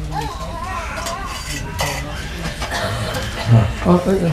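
Indistinct voices in the room and people moving about, with light clinks and knocks as something is shifted, as when an instrument is being brought forward and set down. A louder voice comes in near the end.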